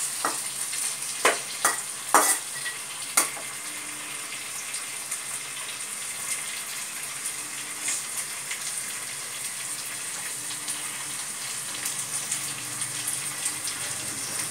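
Green peas and onion sizzling as they fry in a kadai. A metal spatula knocks against the pan about five times in the first three seconds of stirring, then the frying settles into a steady sizzle.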